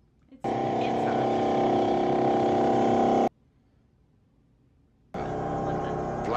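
A loud, steady drone of several held pitches together, starting and cutting off abruptly, about three seconds long. A couple of seconds of near silence follow, then a busier sound with shifting pitches starts near the end.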